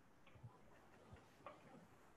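Near silence with three or four faint, short clicks.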